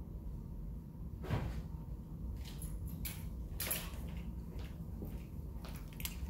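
A few light knocks and rustles of objects being handled, scattered through the middle, over a steady low hum.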